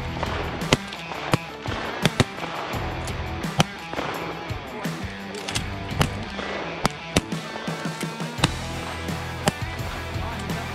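Shotgun fire, about a dozen sharp shots at irregular intervals, heard over background music with a steady bass line.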